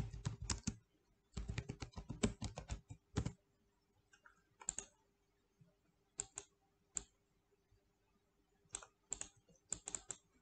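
Computer keyboard typing in two quick runs over the first three seconds or so, followed by scattered single clicks every second or two.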